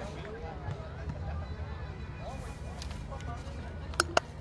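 Faint, distant voices of people on and around a football pitch talking during a stoppage in play, over a steady low rumble of outdoor background noise.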